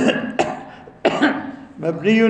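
A man coughing: three short, sudden coughs in about a second.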